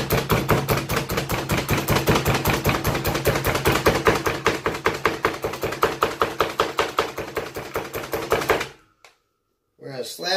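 Slap Chop plunger-style manual food chopper pumped rapidly by hand, chopping chipotle peppers in adobo: a fast, even run of plastic clacks, several a second, that stops suddenly near the end.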